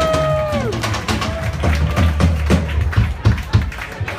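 Background music with a steady bass line playing over the venue's sound system, with a brief whoop at the start and scattered knocks and taps throughout.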